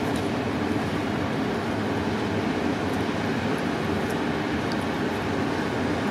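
Steady roar of ocean surf, rows of whitewater breakers rolling onto the beach, mixed with the noise of a moderate onshore wind.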